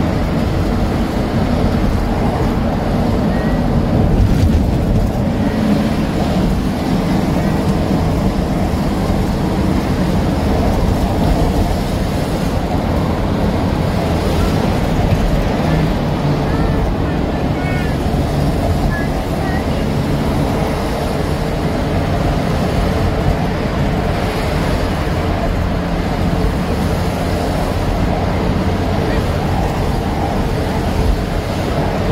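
Steady rumble of a car's engine and tyres while it drives through a road tunnel, even and unbroken throughout.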